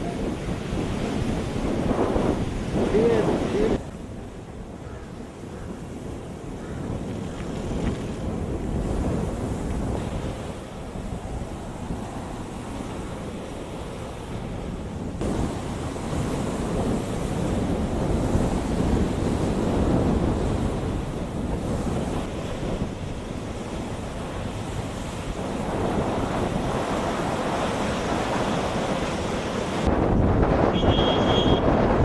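Wind-driven waves on a flooded reservoir, surging and breaking against the shore and a sloping stone embankment, with wind buffeting the microphone. The level drops abruptly about four seconds in and shifts again around fifteen seconds.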